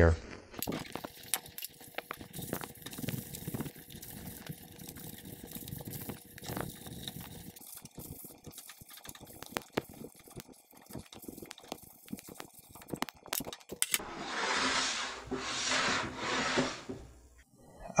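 A cloth rubbing paste wax onto a plywood sled, with scattered light clicks and taps of handling. Near the end come a few louder wiping strokes.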